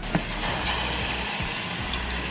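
Water poured steadily from a bowl into a hot pot of rice, sizzling as it hits the hot oil and grains.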